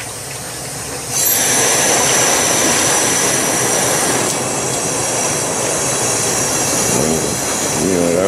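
Compressed air bubbling up through a drum of hot degreaser solution from a copper air line, agitating the parts-cleaning bath. About a second in the air is turned up to roughly 15 to 20 psi, and the sound jumps to a much louder, steady churning with a high hissing whistle over it as the surface foams up.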